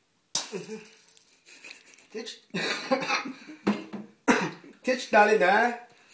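A person speaking in short, broken phrases that become fuller and more sing-song near the end. It opens with a sudden sharp burst, like a cough, about a third of a second in.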